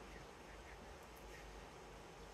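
Near silence: faint steady room tone and hiss, with a few very faint short high sounds.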